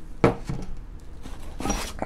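Hardware being handled in a cardboard box: a sharp knock about a quarter second in, then rummaging through packing paper with a short metallic clink near the end as loose castle nuts, bolts and washers are picked up.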